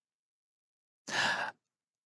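Dead silence, then about a second in a man's single short sigh, a noisy breath out lasting about half a second.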